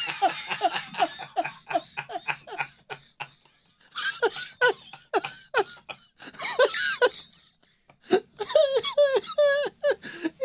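Several men laughing together in runs of short, repeated ha-ha pulses, breaking off briefly twice before picking up again.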